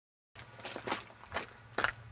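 Footsteps on rocky, gravelly ground: a few uneven crunching steps, the sharpest just before the end, over a low steady rumble.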